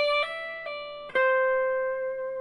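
Fender Stratocaster electric guitar through an amp playing a lead lick: a held note on the high E string is hammered on a step higher and pulled back off. About a second in, a new picked note on the B string rings on steadily.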